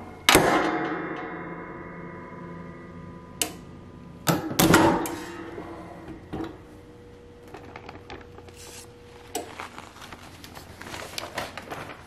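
Metal clamshell heat press clanking shut just after the start, the clank ringing on and fading over a few seconds. A second clatter comes about four and a half seconds in as the press is opened again, followed by lighter clicks and handling noise.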